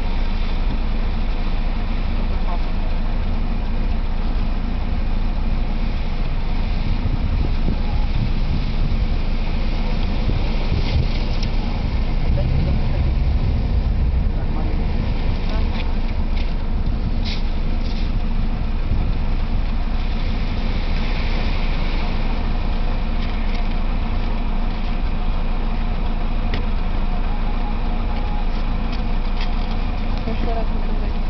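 Nissan X-Trail SUV driving on loose gravel some distance away: engine running and tyres on stones under a steady low rumble, the rumble swelling for a couple of seconds around the middle.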